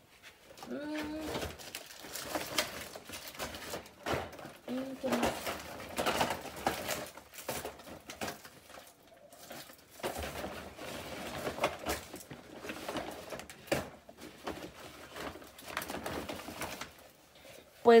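Irregular rustling and clicking of plastic-wrapped cosmetic boxes and packaging being handled. A couple of short, quiet vocal sounds come about a second in and again about five seconds in.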